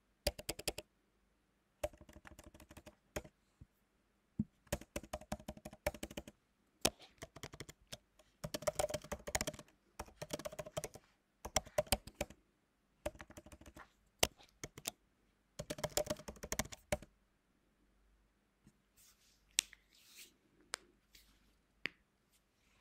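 Computer keyboard typing in quick bursts of keystrokes with short pauses between them. The typing stops about three-quarters of the way through.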